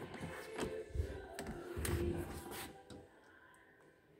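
Rear door of a Morris Minor Traveller being opened: a series of clicks and knocks from the latch and wood-framed door, with a few dull thumps, stopping about three seconds in.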